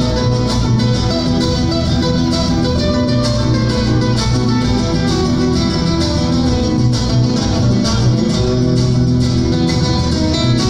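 Fast, rhythmically strummed Latin acoustic guitar music playing steadily, with no singing in this stretch.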